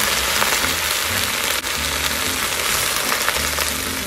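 Wet Swiss chard leaves sizzling in hot olive oil in a pan, a steady loud hiss; the water left on the leaves from washing is hitting the hot oil.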